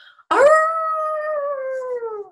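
A woman's voice imitating a dog's howl: one long call that swoops up at the start, holds its pitch, then slowly falls as it trails off.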